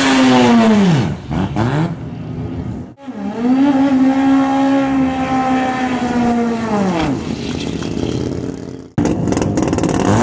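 Drag race car engine held at high revs and then dropping back, heard in separate takes that cut off suddenly twice: a steady high note from about three seconds in falls away near seven seconds, and quick revving starts in the last second. The held revs come with tire smoke, the sign of a burnout.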